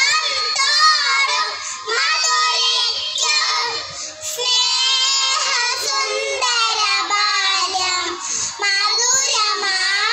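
A group of kindergarten children singing a Malayalam song together into stage microphones, their high voices heard over the hall's loudspeakers.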